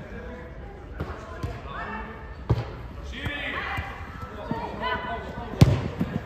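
A football struck twice with sharp thuds, once about two and a half seconds in and again, loudest, near the end, amid shouting voices.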